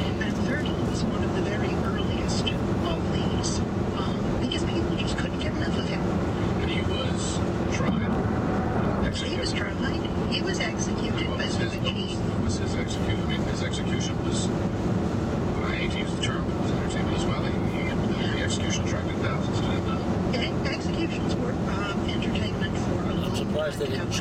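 Steady road and tyre noise inside the cabin of a 2011 VW Tiguan SEL at highway speed, the low-profile 50-series tyres on 18-inch wheels humming on the concrete interstate. Muffled talk runs underneath.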